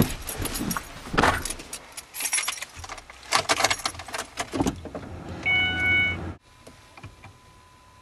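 A bunch of car keys jangling and clicking for several seconds as they are handled at the steering column. Near the end a brief steady electronic tone sounds over a low rumble, the loudest moment, and both cut off suddenly.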